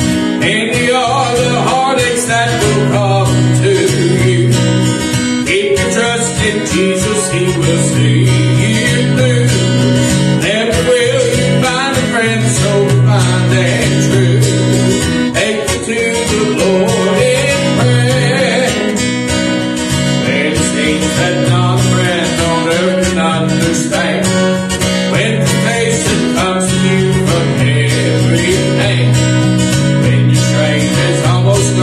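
A man singing an old hymn while strumming an acoustic guitar in a steady rhythm.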